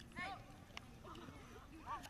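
Voices calling out across an outdoor soccer field, with one brief rising shout near the start. A single sharp knock comes a little under a second in, over a low steady rumble.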